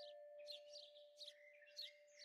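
Faint, soft background music: a long held note with bird chirps repeating over it.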